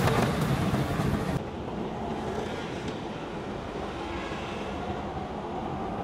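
Auto-rickshaw (tuk-tuk) ride heard from inside the cab: steady engine and road noise. About a second and a half in, the sound turns suddenly quieter and duller, leaving mostly a low rumble.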